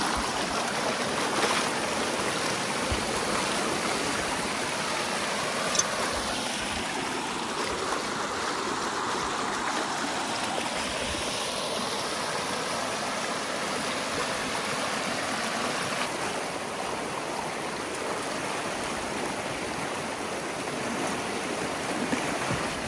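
Muddy creek water rushing steadily through a breach opened in a beaver dam, pouring over in a small cascade.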